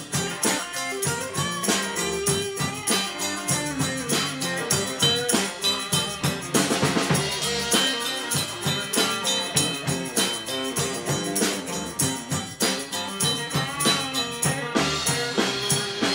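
Live rock band playing an instrumental break: a Les Paul-style electric guitar plays a lead line over a steady drum-kit beat and bass.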